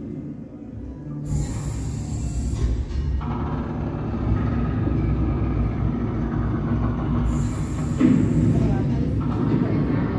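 Exhibit soundtrack of a passenger train running, a steady low rumble with two bursts of hiss, over music.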